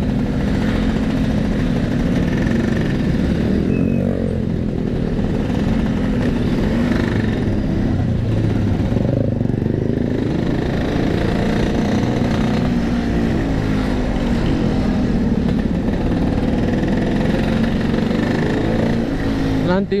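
Two-stroke Vespa scooter engine running at low speed in stop-and-go traffic, its pitch rising and falling a little with small throttle changes.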